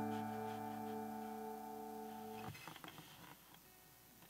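Music: a strummed acoustic guitar chord rings out and slowly fades, then is cut off short about two and a half seconds in, leaving a few faint clicks.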